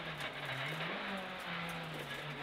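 Honda Civic Type-R R3 rally car's four-cylinder engine heard from inside the cabin, its revs dropping and climbing again twice.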